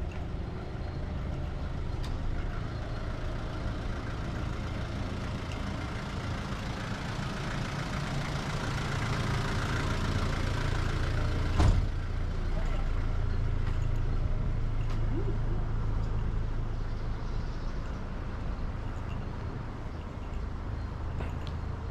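Motor vehicle engine running at idle, a steady low hum that swells louder around the middle, with one sharp knock about twelve seconds in.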